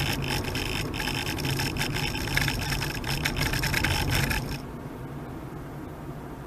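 In-cabin road and tyre noise of a Honda Freed Hybrid driving at about 45 km/h, a steady low rumble. Over it comes a loud hiss with rapid crackles, which stops suddenly about four and a half seconds in.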